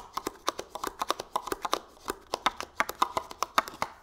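Cardstock crinkling and clicking as a paper liner is poked and pressed down inside a deep cardstock box: a rapid, irregular run of small taps and scrapes.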